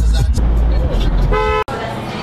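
Music with a heavy bass beat and a voice over it, then a short car horn toot about a second and a half in, cut off abruptly.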